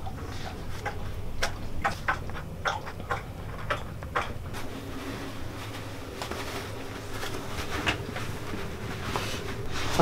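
Light knocks, taps and rustles of handling: a large paper envelope being packed on a wooden table, then a coat being pulled on, over a low steady hum. The knocks come several to the second in the first half and thin out later.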